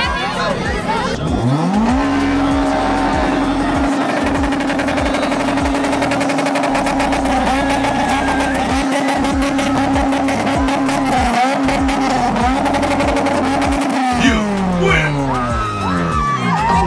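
A car engine revs up sharply and is held at a steady high pitch for about twelve seconds, dipping briefly a few times, then the revs fall away near the end. Music with a beat and crowd noise run underneath.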